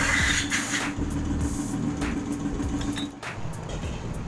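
Light metallic clinks of motorcycle engine parts being handled, over a steady hum that stops about three seconds in.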